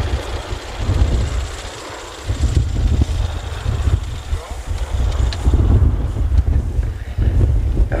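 Heavy wind buffeting on the microphone, with the distant drone of a formation of Pilatus PC-9 turboprop aircraft performing a barrel roll overhead.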